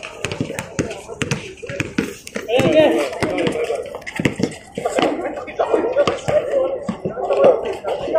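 Several voices talk and call out over one another during a basketball game, with a basketball bouncing on a hard court and scattered sharp knocks.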